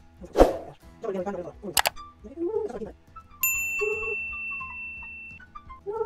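Notes played on a virtual piano app to match a sung pitch: a held steady tone, a short note, then near the end a sustained A4 (La 4). Short snatches of voice come first.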